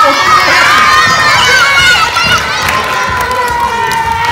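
A large group of children cheering and shouting excitedly all at once, with one drawn-out cry slowly falling in pitch under the rest.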